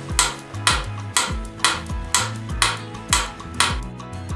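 Mechanical pendulum metronome ticking steadily, about two ticks a second, over background music.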